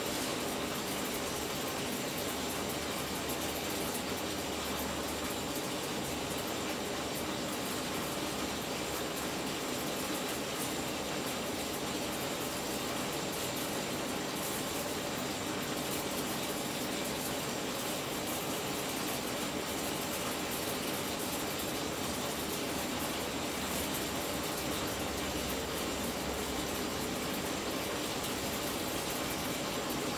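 High-voltage arcing across the inside of an LG plasma display panel, fed about 2 kV from two stacked microwave-oven transformers, with the hum of the transformers: a steady, even buzz and crackle.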